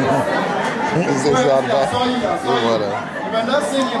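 Speech only: a man talking into a microphone in a large hall, with chatter alongside.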